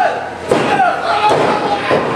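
Thuds of wrestlers' bodies hitting a wrestling ring mat, a sharp one about half a second in and another just past a second, with shouting voices between them.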